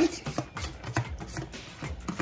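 Several light, irregular clicks and taps of kitchen tongs scraping chopped thyme off a scraper into a pan, with music faintly underneath.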